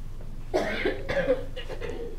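A person coughing: a few rough coughs, starting about half a second in.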